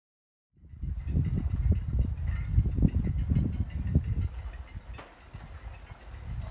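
Low, gusting rumble of wind buffeting a phone's microphone outdoors, over faint street sounds; it starts suddenly about half a second in and eases off near the end.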